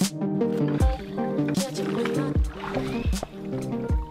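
Background electronic-pop music with a steady kick-drum beat under layered synth lines.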